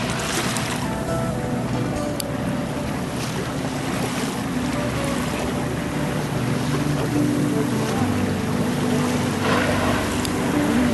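Boat engine running steadily under wind noise on the microphone and the wash of water. A few short rushing bursts come through, one right at the start and one near the end.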